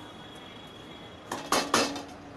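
Kitchen utensils clattering: three sharp clinks and knocks in quick succession in the last second, as a bowl and spatula are picked up beside a steel bowl on the stove.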